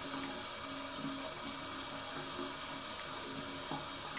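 Steady hiss of running water from a bathroom tap, with faint music under it.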